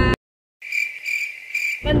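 The car-cabin noise cuts off abruptly to dead silence. About half a second in, an edited-in cricket chirping sound effect plays: a steady, high, pulsing trill. The cabin noise comes back just before the end.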